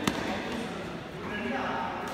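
A badminton racket hitting a shuttlecock once, a single sharp crack just after the start, with voices in the hall behind.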